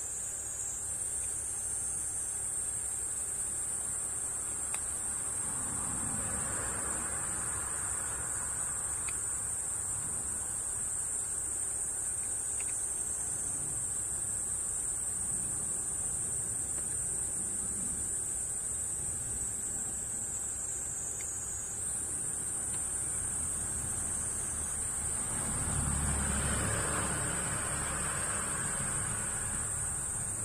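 A steady, high-pitched insect chorus buzzing without a break. A soft rushing sound swells up twice, about a fifth of the way in and again near the end.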